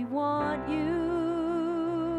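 Live worship band: a woman's voice slides up into one long held note with vibrato, over a sustained band backing of keyboard and electric guitars.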